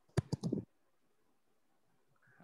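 A quick cluster of three or four clicks in the first half-second, then near silence.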